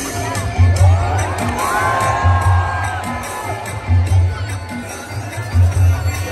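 Loud amplified concert music with a heavy, repeating bass beat, with a large crowd cheering and shouting over it.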